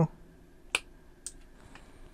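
Hand-held angle shears snipping through a COB LED strip: one sharp click just under a second in, then a fainter, higher click about half a second later.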